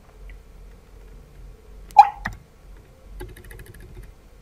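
Light computer-keyboard key clicks as text is deleted in the editor. About two seconds in comes a single brief, sharp, hiccup-like vocal sound, the loudest thing heard, followed closely by a smaller one.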